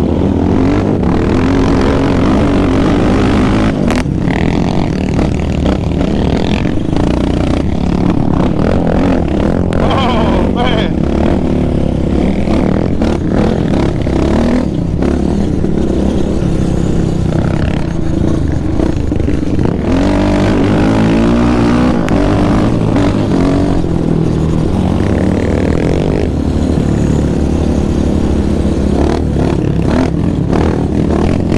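Yamaha Raptor 700R sport quad's single-cylinder engine running hard at riding speed, its pitch rising and falling again and again as the throttle is worked, heard close up from the rider's seat.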